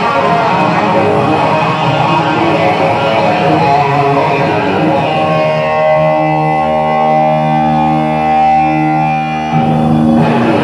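A blues-rock band playing live: electric guitars with bass and drums. About halfway through, the playing settles into a held chord ringing for about four seconds, and the full band comes back in near the end.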